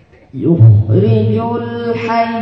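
Male qari reciting the Quran in Arabic in melodic tajweed style. After a brief pause his voice comes in about a third of a second in, bends up quickly in pitch, then holds one long, steady note.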